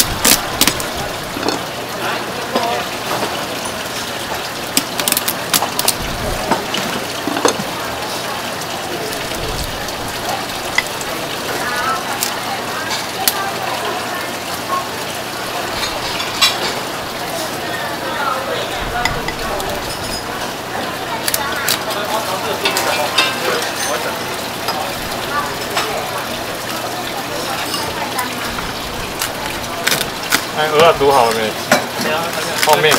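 A steady kitchen hiss, with scattered sharp clicks of a chef's knife and lobster shell against a wooden cutting board as raw spiny lobster tail meat is cut. Faint voices are in the background.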